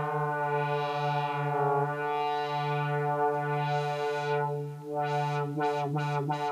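Moog Multimoog analogue synthesizer holding one steady low note while its filter opens and closes twice, the tone brightening and darkening. Near the end the note is struck several times in quick succession, each strike with a short bright filter sweep.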